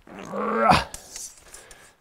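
A man's strained vocal grunt of effort, under a second long, rising in pitch at the end, as he bends a fibreglass tent pole into an arch; faint clicks and fabric rustles follow.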